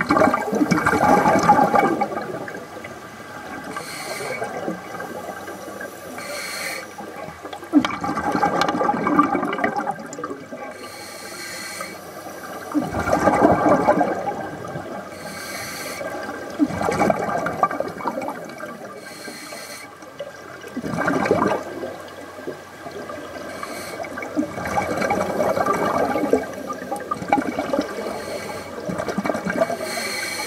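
Scuba diver breathing through a regulator underwater. Exhaled bubbles gurgle in bursts every four seconds or so, and a short hiss of each inhalation comes between them.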